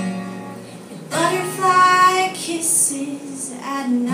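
A woman singing a slow ballad to her own acoustic guitar, live. A held note fades over the first second, then a louder sung phrase comes in about a second in.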